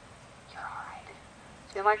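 Low background hiss with a faint breathy, whisper-like sound about half a second in, then a woman starts speaking near the end.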